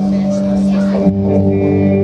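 Live band playing sustained, droning chords, shifting to a new chord about a second in.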